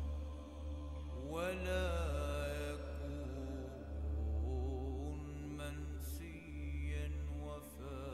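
Soundtrack of a solo voice chanting in long, wavering held notes over a low steady drone, the voice coming in about a second in.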